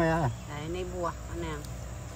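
A steady, high-pitched insect chorus drones in the background. A man's voice lies over it, louder at the very start and then softer.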